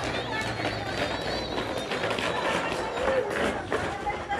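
Overlapping voices of several people chatting and calling out at a distance, over a steady background hum.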